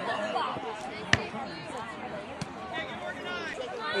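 A soccer ball struck once with a sharp thud about a second in, over scattered voices on the sideline.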